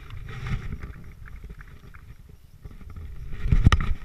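Wind buffeting and handling rumble on a body-worn action camera's microphone, uneven and dipping in the middle, with a sharp thud near the end.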